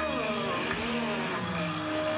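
Live heavy metal band playing, with distorted electric guitar sliding down and back up in pitch over a held note.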